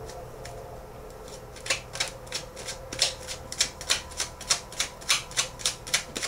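Tarot deck shuffled by hand, the cards slapping together about four times a second, starting about a second and a half in.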